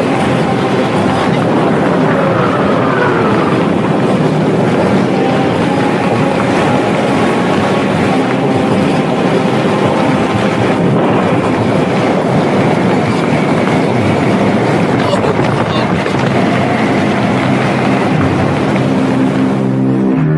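A loud, steady rushing rumble with no pauses, a dramatic sound-effect bed, with a few faint sweeping tones gliding through it early on.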